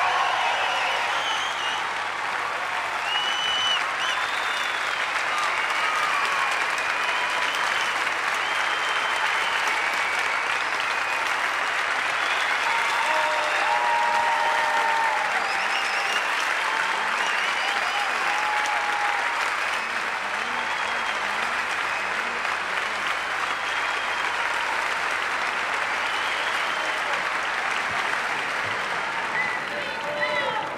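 Theatre audience applauding steadily after a song, with scattered voices calling out over the clapping.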